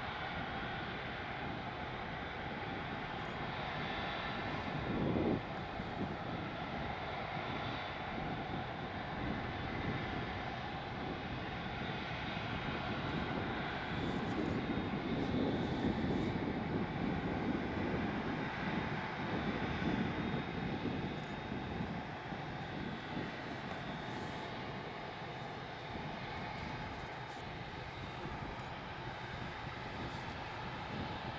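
Airbus A380-800's four turbofan engines at low thrust as the airliner taxis along the runway: a steady jet whine over a rumble, the low rumble swelling for several seconds midway. A brief thump about five seconds in.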